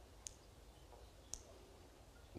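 Two faint, sharp clicks about a second apart: the button of a handheld presentation remote being pressed, in near silence.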